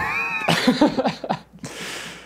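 People laughing: a high-pitched squealing laugh that rises and falls in the first half second, followed by short choppy chuckles and breathy laughter.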